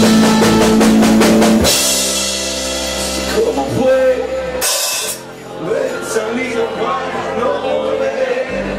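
Live rock band with drum kit, electric guitars and keyboard: a rapid drum roll over a loud held chord, then the music thins out and a single loud cymbal crash comes about five seconds in, followed by a quieter, sparser stretch.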